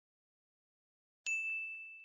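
A single bright, bell-like ding used as a logo chime, struck suddenly out of silence a little past a second in and ringing on with a long, slow fade.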